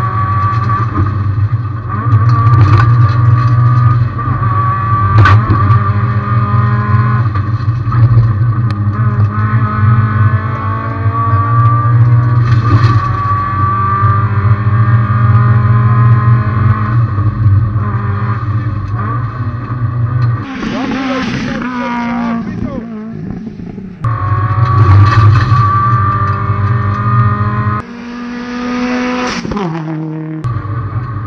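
Subaru WRX STI rally car's turbocharged flat-four engine at high revs, its pitch climbing and dropping again and again as it shifts through the gears. About two-thirds of the way in, and again near the end, the engine sound breaks into short bursts of rushing noise with falling pitch, like a car passing close by.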